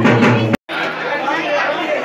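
Music with a drum beat that cuts off abruptly about half a second in, followed by the chatter of a crowd of many people talking at once.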